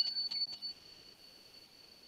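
A few quick clicks and a single high-pitched chime that rings on and fades away over about two seconds.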